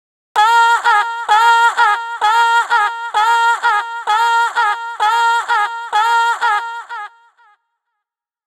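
VOCALOID5 synthesized singing voice repeating one short sung syllable on a single held note, about twice a second, each with a slight upward scoop at its start. It trails away shortly before the end.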